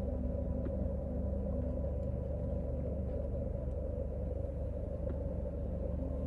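Steady low rumble of a car's engine, heard from inside the cabin, with a faint constant hum over it.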